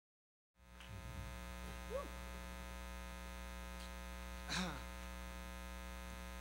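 Steady electrical mains hum with many evenly spaced overtones, starting about half a second in. Two faint, brief pitched sounds come through it, one rising near two seconds and another near four and a half seconds.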